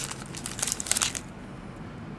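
Crinkling of a trading-card pack wrapper as hands handle it: a quick run of small crackles that dies away a little over a second in.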